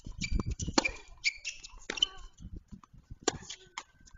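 Tennis rally: sharp knocks of the ball being struck and bouncing on the court, roughly a second apart, with short high squeaks between them.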